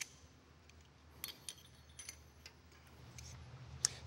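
Faint, scattered light metallic clicks of pushrods being handled and installed in an engine, with one sharper click near the end.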